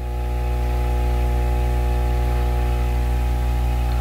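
Steady electrical hum of running aquarium equipment, a low drone made of several held tones that does not change.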